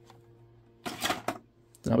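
Hands handling boxed model packaging on a tabletop: a short cluster of light clicks and rattles about a second in, over a faint steady hum.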